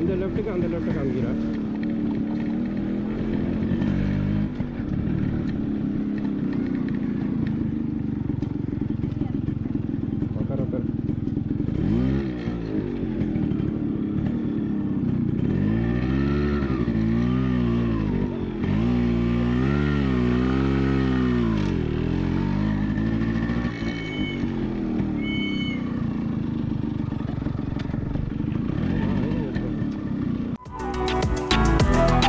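Yamaha motorcycle engine running as it is ridden over rough dirt and sand tracks, steady at first, then its pitch rising and falling repeatedly with the throttle through the middle of the stretch.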